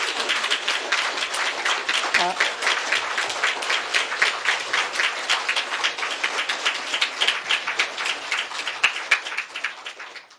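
Audience applauding, many people clapping densely and steadily; the applause fades out at the very end. A brief voice sounds about two seconds in.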